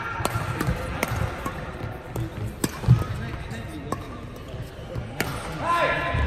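Badminton rackets striking a shuttlecock in a fast doubles rally: a series of sharp cracks spaced about half a second to a second and a half apart, the loudest about three seconds in. A short pitched squeal comes near the end.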